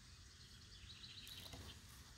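Near silence: faint outdoor background noise, with a quick series of faint high bird chirps in the second half.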